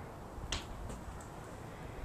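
A single short, sharp click about half a second in, followed by two fainter ticks, over a low rumble.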